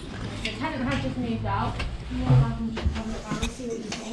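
Indistinct, muffled voices, with rustling and a few sharp clicks from a hand-held phone camera being handled.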